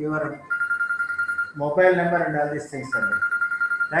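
A steady high electronic beep, each about a second long, sounds twice with a man's voice between the beeps.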